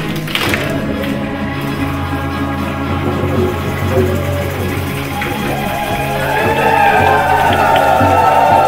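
A group singing a chant together, accompanied by a strummed acoustic guitar and a hand-held frame drum. The singing grows louder over the last couple of seconds.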